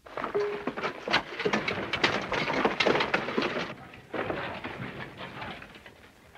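Picks and shovels knocking and scraping at rock and rubble in a coal mine, a dense run of irregular knocks and clatter that fades after about four seconds.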